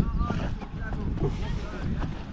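Wind buffeting the microphone in a low, uneven rumble, with faint distant voices of players calling.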